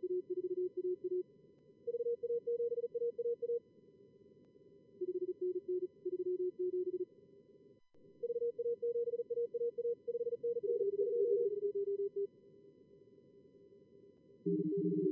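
Morse code (CW) tones at contest speed from simulated callers in SkookumLogger's practice mode, keyed in runs of a second or two. They alternate between a lower and a higher pitch, around 350 to 500 Hz, over faint narrow-band receiver hiss.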